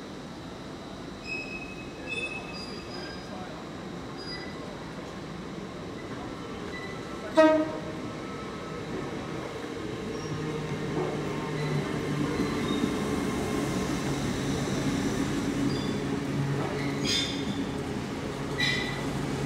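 A train approaches and runs past close along the platform. Its steady low hum and rumble build from about ten seconds in. About seven seconds in comes a short, loud horn toot.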